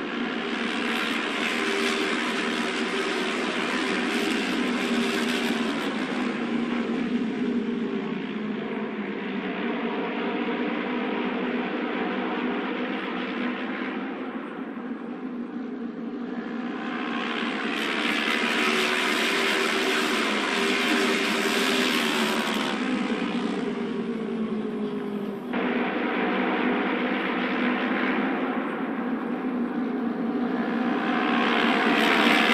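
Several Japanese auto race motorcycles with 600cc twin-cylinder engines running at racing speed, their engine pitch rising and falling as the bikes come past. The sound swells twice and cuts off suddenly about three quarters of the way through, then goes on at a similar level.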